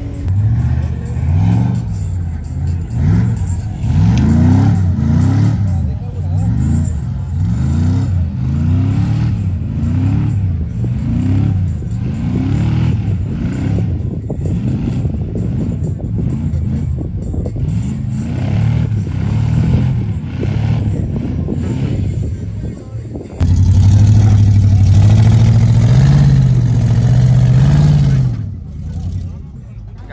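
Off-road vehicle's engine revved over and over as it spins in loose sand, the pitch climbing and dropping back about once a second. About three-quarters through, the sound cuts abruptly to a louder, steadier engine note that steps up in pitch, then fades near the end.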